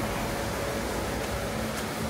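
Steady background hiss with a faint hum, the room noise of a large shop building, like ventilation or fans running.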